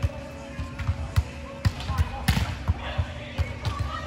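Dull thumps of an indoor beach volleyball rally, about two a second; the player's forearms and hands striking the ball are among them.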